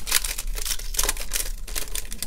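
Foil wrapper of a Panini Flux basketball card pack crinkling and crackling as it is torn open by hand.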